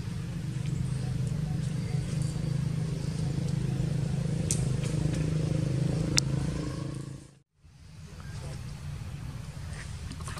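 A motor vehicle's engine running steadily nearby, swelling a little and then fading out about seven seconds in. A single sharp click comes shortly before the fade.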